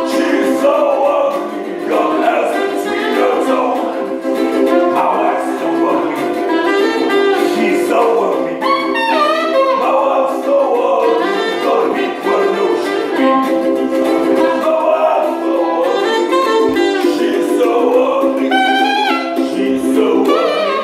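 Live saxophone playing an instrumental solo over strummed ukulele in a blues-ragtime tune, with quick runs sliding up and down about halfway through and again near the end.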